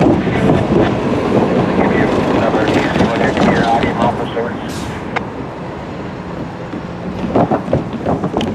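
Freight train cars rolling away along the rails, their wheels clicking and rumbling on the track, growing somewhat quieter about halfway through.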